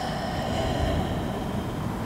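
Steady low rumble of background noise, even throughout, with faint steady high tones above it.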